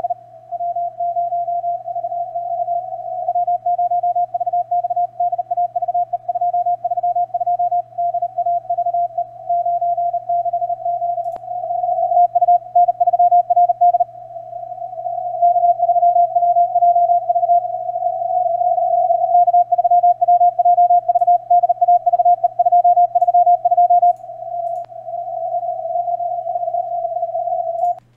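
Morse code (CW) signal received on the 20 m amateur band through an SDRplay RSP1a SDR, heard as a single steady-pitched beep keyed on and off very fast, with some stretches louder than others. A faint low hum runs beneath it.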